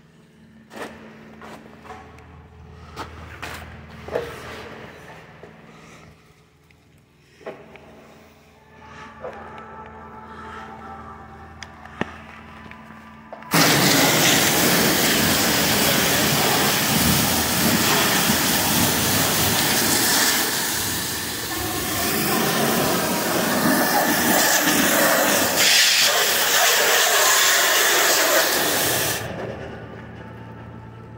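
High-pressure washer wand blasting hot water and detergent against a semi tractor's cab side and steps: a loud steady hiss that starts suddenly about halfway through and cuts off just before the end. Before it, scattered light clicks over a low steady hum.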